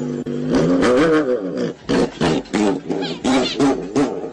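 An animal yowling: one long call that rises and then falls, followed by a run of shorter yowls at about three a second.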